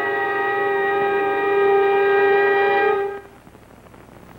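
Closing chord of a brass fanfare, held steady and cutting off about three seconds in, followed by faint tape hiss.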